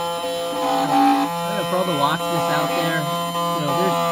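Mini Condor key machine's cutter motor running steadily as it mills a brass SC1 key blank: a steady whine made of several held tones, with one middle tone switching on and off for about half a second near the start. Quiet talk runs over it from about a second and a half in.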